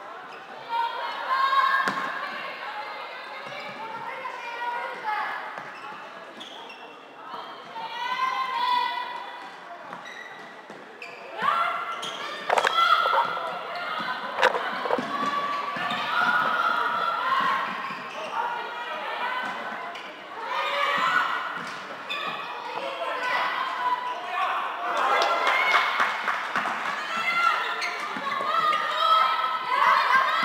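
Floorball play in a sports hall: players calling and shouting to each other, with sharp clacks of sticks hitting the plastic ball, echoing in the hall.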